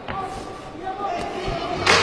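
Ringside sound of two boxers in a clinch: a sharp thud of glove contact right at the start and a louder burst of impact noise near the end, over faint shouting in the arena.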